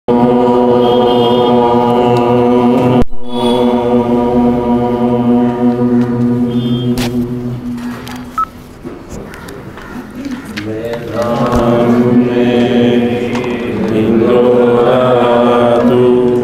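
Mantra chanting: one long, steady chanted note held for most of the first eight seconds with a brief break near the third second, then after a quieter moment the chanting resumes with pitch rising and falling.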